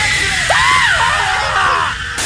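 A person screaming over loud music, the scream's pitch sagging and climbing again about half a second in.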